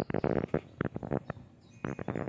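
Two bursts of rapid, sharp clicking, a rattling series of clicks at the start and another near the end.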